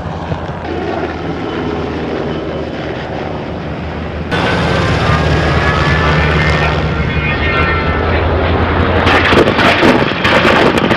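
A-10 Thunderbolt II jet engines flying past: a steady jet noise that jumps louder about four seconds in. A whine then falls in pitch as the aircraft passes, and the sound turns rough and crackling near the end.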